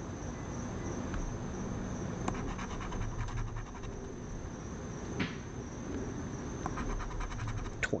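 Coin scratching the coating off a paper lottery scratch-off ticket, with runs of short rapid strokes and an occasional sharper click.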